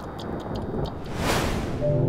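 Logo-sting sound design: a rising whoosh that swells to a peak just past halfway and fades, with scattered high tinkling chime notes over a low rumble. A held synth chord comes in at the very end.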